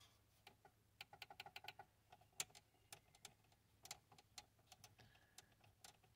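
Faint, irregular plastic clicks from the CD-eject button on a first-generation Toyota Yaris's car radio as it is pressed and wiggled. There is a quick run of several clicks about a second in, then single clicks scattered through.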